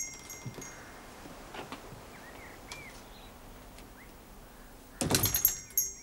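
A shop door with a bell on it opening and shutting: the bell jangles briefly with a clatter just at the start and again about five seconds in. Between the two, a few faint bird chirps.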